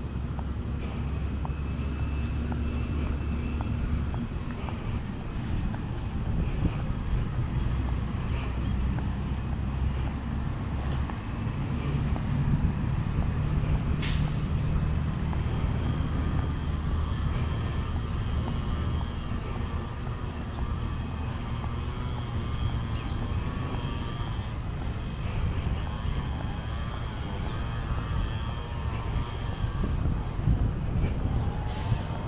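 Steady low rumble of road traffic with a heavy truck engine running among it. A single sharp click about halfway through.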